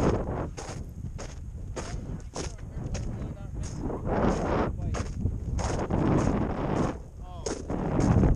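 Strong wind buffeting the microphone: a continuous low rumble broken by irregular sharp crackles and pops, about two a second.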